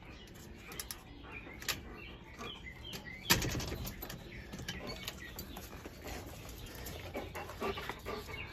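Metal security screen door being handled and opened: scattered light clicks, with one louder knock a little over three seconds in.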